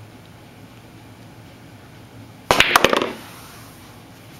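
A pool shot: the cue tip striking the cue ball and billiard balls clacking together, a quick run of sharp clicks about two and a half seconds in that rings off briefly.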